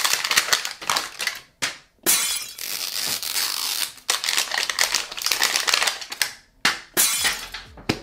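Plastic and paper wrapping crinkling and tearing as it is peeled off a toy capsule ball, in three or four stretches with short pauses between them. A couple of sharp clicks near the end, as the plastic capsule is handled open.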